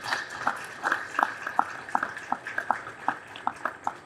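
A small crowd of guests clapping their hands in applause, the claps thinning and fading toward the end.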